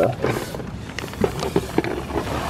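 Liquid nitrogen pouring from a metal dewar into a plastic funnel and boiling off on contact: a hiss with rapid crackling and sputtering clicks, the hiss building toward the end.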